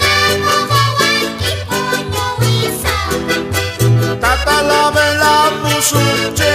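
Instrumental passage of a Bolivian Santa Vera Cruz copla. A button accordion plays the melody over rhythmically strummed charango and guitar, with a steady, repeating bass line.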